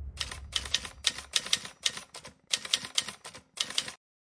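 Typewriter keystroke sound effect: sharp key clicks in quick, uneven runs, with a short break about two and a half seconds in, cutting off just before the end.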